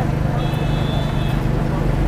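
Busy outdoor street ambience: a steady low machine hum with background voices and traffic noise. A brief, steady high-pitched tone sounds about half a second in and stops just under a second later.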